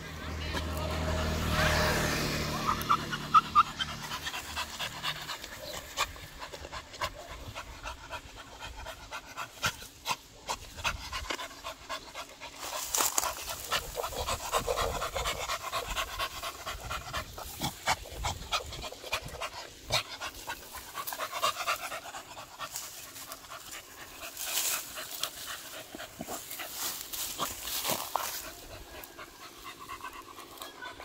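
A beagle panting while it digs in loose soil with its front paws, with repeated short scratches and scrapes of claws on dirt and grass.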